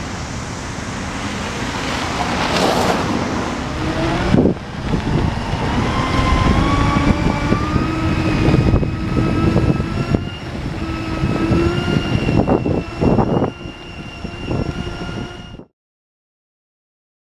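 Segway personal transporter riding along, its drive whining in a pitch that climbs slowly with speed, over a rushing, rumbling noise on the microphone. There is a sharp knock about four seconds in, and the sound cuts off suddenly near the end.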